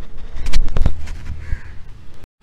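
A few sharp knocks and a low rumble from a phone camera being handled up close as a hand reaches to stop the recording.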